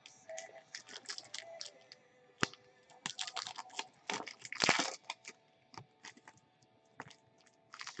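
Scattered crinkles and clicks of trading-card packs and cards being handled, with a sharp click about two and a half seconds in and a louder rustle a little past halfway.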